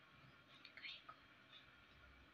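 Near silence: faint room tone, with a brief soft scratchy sound about halfway through.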